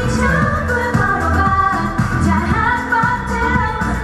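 A woman singing a pop song into a handheld microphone over a backing track with a steady beat.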